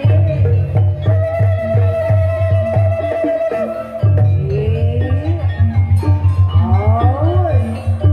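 Live gamelan-style accompaniment for a barongan dance: a steady, heavy drum beat under a long held, wavering melody note. About halfway the drum beat quickens and the melody turns into sliding notes that bend up and down.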